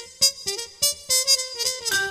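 Swing band recording in an instrumental passage without vocals: a piano-like keyboard line over sharp drum hits, about three or four a second.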